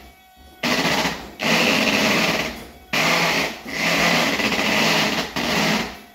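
A Volvo electro-hydraulic power steering pump runs on its high setting, loud and whirring. It comes in repeated bursts of about a second, with short dips between them, as the steering wheel is turned back and forth.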